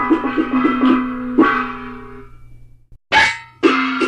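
Instrumental accompaniment of a Taiwanese opera (gezaixi) radio broadcast: plucked strings and percussion in a quick, even beat over a held note. The music dies away about two seconds in, then after a short break it starts again near the end.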